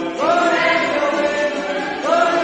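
A small mixed group singing together to ukulele strumming. A new sung phrase starts just after the beginning, rising into a held note.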